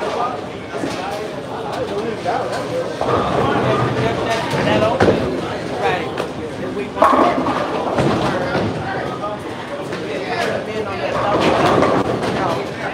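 Bowling alley noise: background chatter, with bowling balls and pins knocking on the lanes. A sharp, loud crash comes about seven seconds in.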